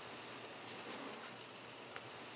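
Faint, steady hiss of room tone picked up by the Sony DCM-M1 MiniDisc camcorder's built-in microphone, with a couple of tiny clicks.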